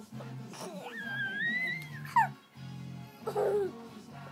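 Background music playing, overlaid about a second in by a high, drawn-out wavering wail that drops sharply in pitch just after two seconds, and a shorter, lower cry near the end.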